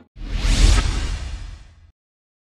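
A whoosh transition sound effect with a deep low rumble. It swells quickly about half a second in and fades away just before the end, introducing an animated title card.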